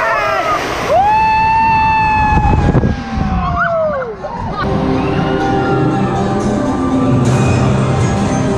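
A woman screaming on a drop-tower ride: one long, high scream held for about two seconds, then falling in pitch. Fainter pitched sounds follow in the second half.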